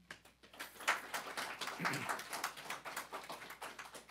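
Small audience applauding, starting about half a second in and thinning out near the end.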